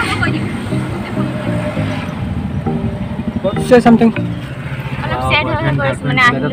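Background music, with short bursts of a person's voice about four seconds in and again near the end.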